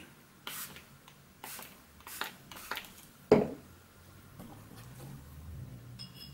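Fine-mist spray bottle of water squirted in short puffs, about five over three seconds, the last and loudest about three seconds in. The painter is re-wetting watercolour paper that has got quite dry, to keep the wet-into-wet wash flowing.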